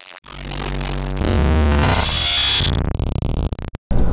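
Electronic logo sting: a swelling synth sound over a deep bass, breaking up into glitchy stutters and cutting off abruptly just before the end.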